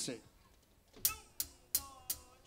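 A drummer's count-in: sharp, evenly spaced clicks of drumsticks struck together, about three a second, starting about a second in.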